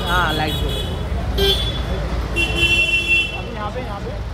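Steady rumble of street traffic and background voices, broken by several short, high-pitched toots, the longest near the end.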